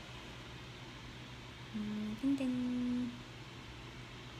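A woman humming two held notes with her mouth closed, a short one and then a slightly higher, longer one, about two seconds in, over quiet room tone.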